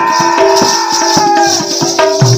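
Live Odia Danda Nacha folk music: one long held melodic note that swells and falls back over regular drum strokes and jingling, rattle-like percussion.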